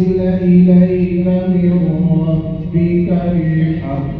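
Quran recitation in tarteel style: one unaccompanied voice chanting in long held notes that step slowly up and down in pitch.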